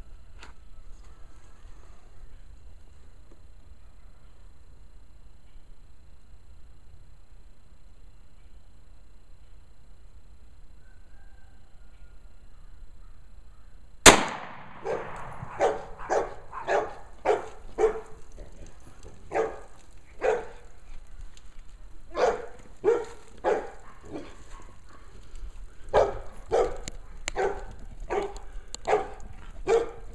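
A single shot from a Glock 29 subcompact 10mm pistol, about halfway through, firing a 200-grain jacketed hollow-point into water-soaked newspaper jugs. It is followed by a string of short, separate sounds, roughly one a second, to the end.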